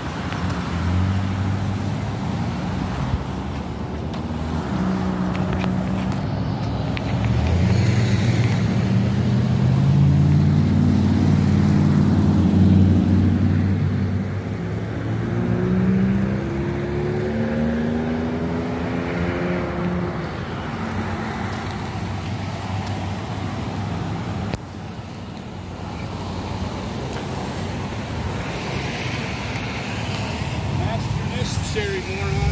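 Road traffic: car engines running close by as vehicles pass, loudest about a third of the way in, with an engine note rising in pitch around the middle.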